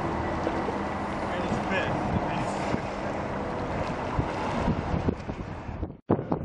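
Wind rumbling on the camera microphone, a steady hiss with faint voices under it, ending abruptly.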